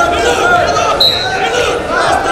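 Wrestling arena voices: coaches and crowd shouting throughout. About a second in there is one short, steady, high-pitched whistle blast from the referee, as ground wrestling is stopped and the wrestlers are stood up.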